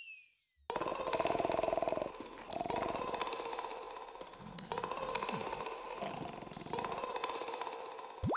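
Loud, rattling snoring from a sleeper, in four long snores of about a second and a half each with short breaks between them.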